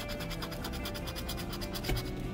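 A plastic scratcher disc scraping the coating off a lottery scratch-off ticket in rapid, even back-and-forth strokes.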